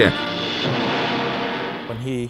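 Eerie 1950s science-fiction film soundtrack: a dense, steady chord held for about two seconds, easing slightly near the end.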